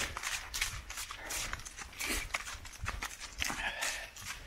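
Running footfalls on a forest path, an even rhythm of about three steps a second, over a low rumble on the microphone.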